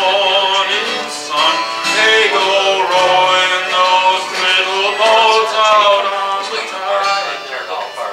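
Live acoustic folk music: a strummed acoustic guitar under a held, gliding melody line from a fiddle and a man's singing.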